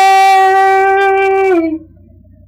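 A woman's singing voice holding one long, steady note that dips slightly in pitch and stops about a second and a half in.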